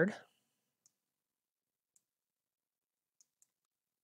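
Four faint, short computer mouse clicks, irregularly spaced.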